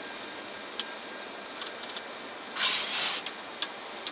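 Steady flight-deck noise of a Boeing 747SP taxiing at low power, with engine and air-conditioning hum. A few sharp clicks and a short loud hiss about two and a half seconds in.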